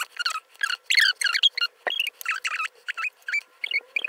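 A rapid run of short high-pitched squeaks and chirps that glide up and down, about four or five a second, with the rise and fall of chattering speech but no low voice in it.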